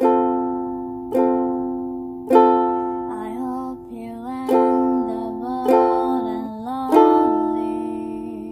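Ukulele chords, each strummed once and left to ring out, a little over a second apart. A voice sings softly over the chords in the middle of the passage.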